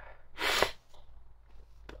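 A man's single short, sharp sniff about half a second in, from a tearful, emotional reaction.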